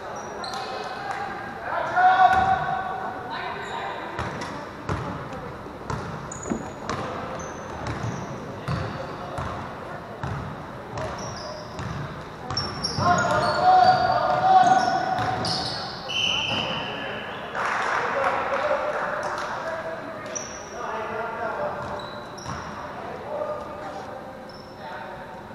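Sounds of a basketball game in a large echoing gym: a ball bouncing on the hardwood floor, short sneaker squeaks, and players and spectators shouting, loudest about two seconds in and again midway through.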